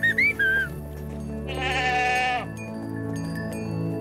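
A few short whistled notes to drive the goats on, then a goat bleating once for about a second, over steady background music.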